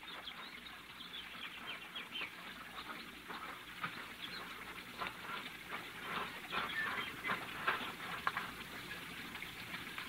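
Birds chirping faintly in short, scattered chirps, a radio-drama garden sound effect heard through a narrow-band 1940s broadcast recording.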